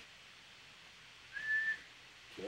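A single brief high-pitched whistle-like tone, rising slightly at the start and then held steady for under half a second, about one and a half seconds in, over faint room hiss.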